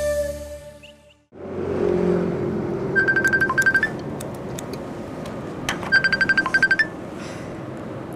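Intro music fades out within the first second. Then a multi-head computerised embroidery machine runs steadily, with two spells of rapid, even clacking from its stitching heads, about three seconds in and again near six seconds.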